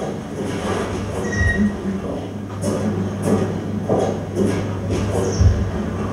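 Soundtrack of a projected film heard over hall speakers: a low steady hum with irregular knocks and clicks scattered through it.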